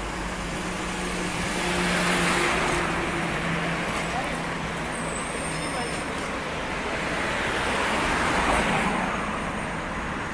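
Road traffic passing close by on a multi-lane road. Vehicles swell past about two seconds in and again near the end, with a steady engine hum through the first half.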